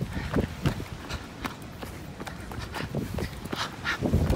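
Running footsteps on a dirt trail: a quick, regular beat of shoe strikes, about three a second.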